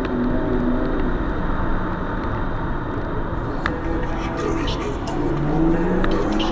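BMW E36 engine revving up and down as the car slides through a snowy bend, its pitch wavering and climbing again near the end.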